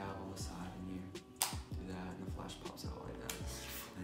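Background hip-hop instrumental music with a steady beat and deep bass notes that slide down in pitch, with one sharp click about one and a half seconds in.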